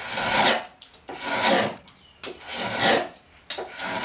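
Drawknife pulled through a wooden chair seat in slicing, skewed cuts: four rasping strokes, about one a second, each peeling off a shaving.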